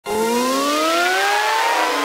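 Synthesized rising sweep from a video intro: several pitched tones glide slowly upward together over a steady hiss.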